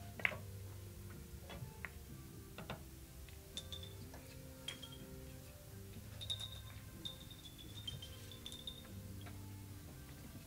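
Faint carom billiards sounds: the cue tip strikes the cue ball about a quarter second in. Scattered light clicks follow as the balls knock against each other, the cushions and the small wooden pins, with a few brief ringing ticks later on.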